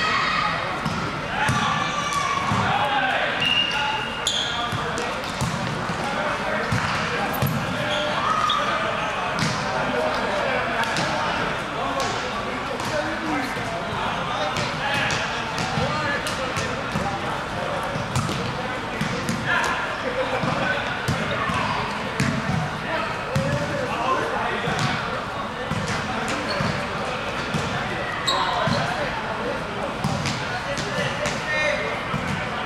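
Volleyball being played on an indoor gym court: several players' voices calling and chattering over one another, with repeated sharp thuds of the ball being hit and landing, echoing in the large hall.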